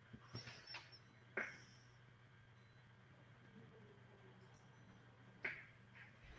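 Near silence: faint room tone over a video call, with a low steady hum and a few soft short sounds, one about a second and a half in and one near the end.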